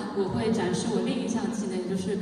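A woman's voice.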